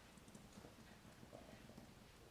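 Near silence: room tone with a few faint, soft taps.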